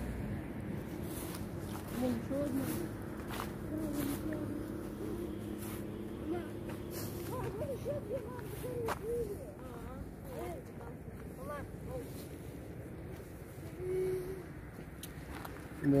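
Quiet outdoor ambience with faint, indistinct voices of people nearby, a few soft clicks, and a faint steady hum in the first half.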